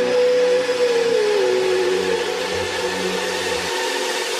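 Electronic music between tracks: a loud white-noise wash with a held synth note that slides down in pitch about a second in, over a low bass layer that drops out near the end.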